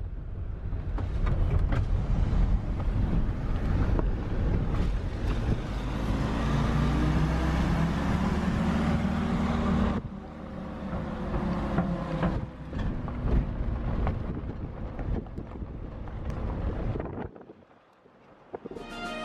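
Engine and road noise heard from inside a moving vehicle. About halfway through, the engine note climbs as it speeds up. The noise drops away suddenly near the end.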